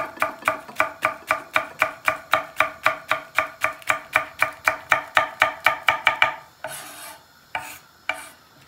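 Kitchen knife chopping green peppers on a thick end-grain wooden cutting board: a fast, steady rhythm of about four strokes a second that stops about six seconds in, followed by a couple of softer knocks.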